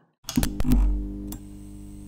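Logo intro music sting: after a moment of silence, a sudden hit with sharp clicks and a deep bass swell, settling into a held, ringing chord.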